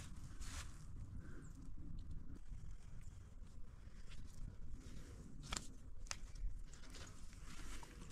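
Faint handling sounds as a donkey's halter is unbuckled and slipped off its head, with two sharp clicks about five and a half and six seconds in, over a steady low rumble.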